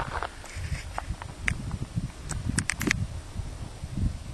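Uneven low rumble on a handheld camera's microphone, with a few sharp clicks between about one and a half and three seconds in.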